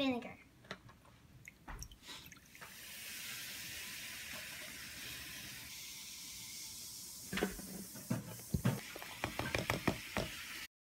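Vinegar poured from a plastic gallon jug into a glass Pyrex measuring cup: a steady splashing pour for about four seconds. It is followed by a run of knocks and taps as baking soda is shaken in from its cardboard box.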